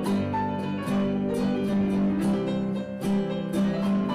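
Acoustic guitar and electric keyboard playing an instrumental passage together, the guitar picked in a steady rhythm over held keyboard notes.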